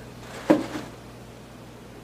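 A single short knock about half a second in, as from a small cardboard box being handled, followed by quiet room tone with a faint steady hum.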